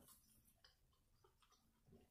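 Near silence: room tone with a faint steady hum and a couple of faint soft clicks.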